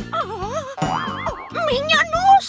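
Cartoon background music with a character's wavering, pitch-bending moans, voiced in pain over a steady bass line, and a short springy boing-like glide about a second in.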